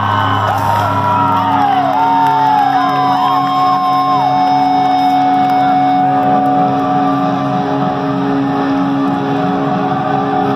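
Live rock band heard from within the crowd: amplified guitar and bass holding long notes, with sliding, bending pitches over the first four seconds. Crowd shouts and whoops are mixed in.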